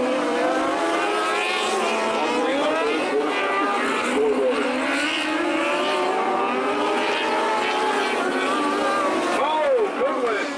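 A pack of 600-class race car engines running hard around a dirt oval, many engines sounding at once with their pitches rising and falling as the cars go through the turns. Near the end one engine's pitch swoops down and back up as it lifts and gets back on the throttle.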